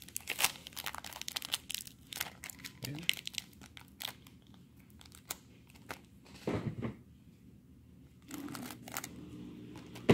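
Foil wrapper of a trading-card pack being torn open and crinkled in the hands: irregular sharp crackles and tearing, in several spurts.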